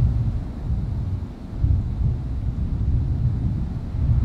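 Low, fluctuating rumble of wind, heavy in the bass with little above it.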